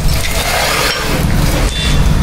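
Belt-driven electric brick-cutting machine running, a loud steady noise with a heavy rumble underneath.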